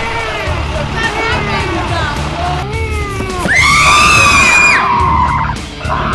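Background music with a pulsing beat, over which come gliding shrieks and then a loud, sharp-onset scream held for nearly two seconds, starting about three and a half seconds in.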